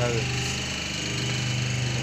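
Semi-automatic hydraulic double-die paper plate making machine running with a steady mechanical hum.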